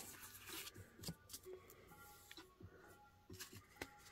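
Near silence with a few faint, brief rustles and ticks of Pokémon trading cards being handled.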